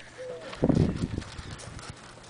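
Handling noise from a handheld camera being moved about: low rumbling bumps and rubbing, loudest about half a second in, then a weaker rumble.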